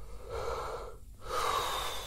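A man breathing heavily close to the microphone: two long, breathy breaths about a second apart, as he tries out lying down to ease a sore neck.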